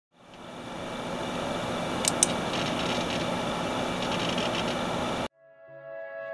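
A steady rushing noise with faint tones in it fades in at the start and cuts off abruptly about five seconds in, with two sharp clicks about two seconds in. Electronic music begins just before the end.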